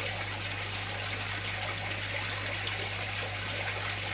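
Koi pond water trickling steadily, over a constant low hum.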